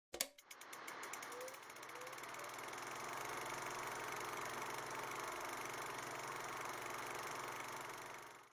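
Film projector sound effect: a click and then a clatter that speeds up over the first second or so, settling into a steady rapid clicking whir as the reel runs.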